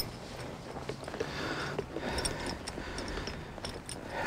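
Faint, irregular footfalls of a horse walking in soft arena dirt under a rider, with a short sharp click right at the start.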